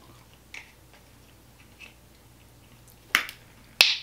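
Small plastic candy-gel tube being handled and opened: a few faint ticks, then two sharp plastic clicks, one about three seconds in with a brief rustle after it and a louder one just before the end.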